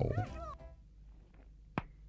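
A cartoon penguin chick's short, squeaky cry that rises and falls in pitch, followed by near-quiet and then a single sharp slap near the end as an adult penguin spanks the chick.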